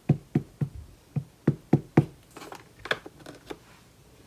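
A rubber stamp on a clear acrylic block and an ink pad tapped together repeatedly to ink the stamp: about nine sharp knocks, roughly three a second. Lighter clicks and handling noises follow.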